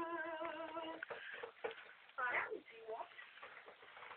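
A person's voice holds one slightly wavering note for about a second, then gives a short rising-and-falling squeal a couple of seconds in, with no clear words.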